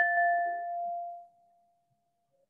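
A hand-held bowl ringing after a single strike: a clear tone with fainter higher overtones that fade first, dying away about a second and a half in.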